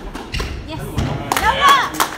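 A squash rally ending: a dull, low thud about half a second in, then a single voice calling out with rising and falling pitch near the end.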